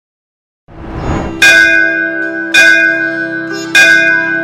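A bell struck three times, about a second and a quarter apart, each strike ringing on over a low sustained drone that swells up just before the first strike.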